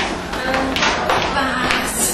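Indistinct voices talking, broken by a few sharp taps, over a steady low hum.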